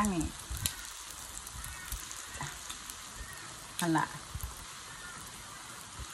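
Pork belly slices sizzling on the hot domed grill of a mu kratha pan: a steady frying hiss with scattered small crackles.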